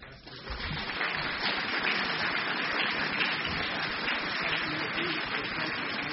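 Audience applauding, building up within the first second and then going on steadily.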